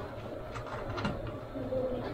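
A pot of water heating on a gas stove, with banana-leaf-wrapped lupis parcels in it: a low steady rumble, with a few light clicks and taps in the first second.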